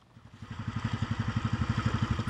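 A small outrigger fishing boat's engine running with a fast, even beat, fading up over the first second, over a steady hiss.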